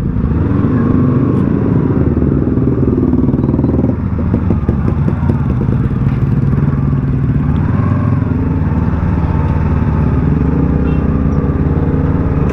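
Motorcycle engine running steadily at low revs while the bike creeps forward, with small rises and falls in pitch and a rougher, rattly patch about four seconds in.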